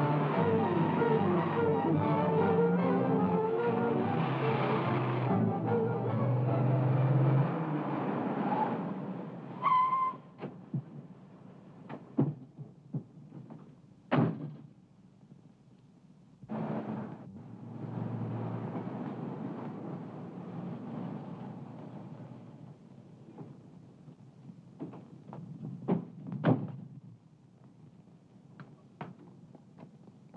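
Loud film-score music for the first eight seconds or so, fading out. Then, more quietly, a car runs with a low rumble while scattered sharp thuds and knocks sound, like car doors shutting.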